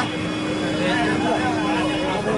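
People talking at a gathering, with voices rising and falling over a steady low hum and background noise.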